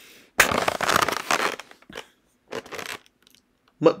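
Paper wrapping and a takeout food box being handled: a loud rustle lasting about a second, then two shorter rustles.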